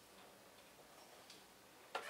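Near silence with a few faint clicks from a small camera being handled, and a sharper click right at the end as it is raised to the eye.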